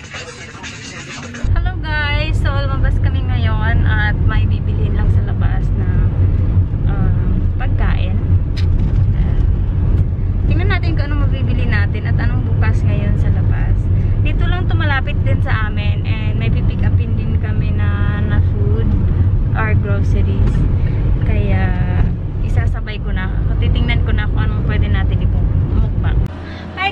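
A woman talking inside a car cabin over a steady low rumble of the car. Music for the first second and a half, cutting off as the rumble and voice begin.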